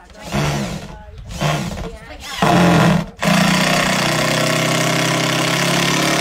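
Cordless drill running into the timber rafters overhead: three short bursts, then one long steady run.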